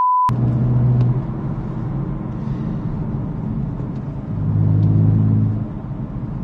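A short steady test-tone beep, then a Stage 3 JB4-tuned BMW M4's twin-turbo straight-six exhaust heard from inside the cabin while driving: a low steady drone that swells louder twice, briefly about a second in and again for over a second near the end.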